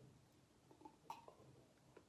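Near silence, with a few faint gulps of a person swallowing a drink from a glass, about a second in.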